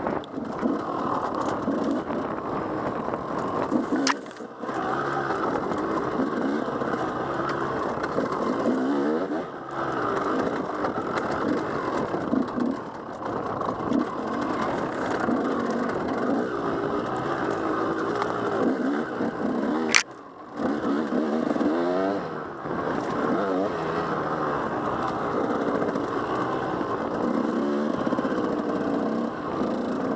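Enduro dirt bike engine running under changing throttle, its pitch rising and falling as the throttle opens and closes. The sound drops out briefly twice, each time with a sharp click, about four and twenty seconds in.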